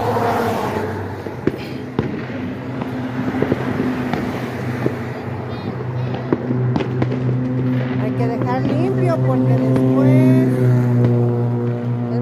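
Background voices and music, the loudest part, with scattered sharp pops and crackles from a small fire of burning cardboard sparkler boxes. The background swells about ten seconds in.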